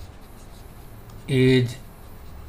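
Stylus scratching across a writing tablet as a word is handwritten, faint under the background.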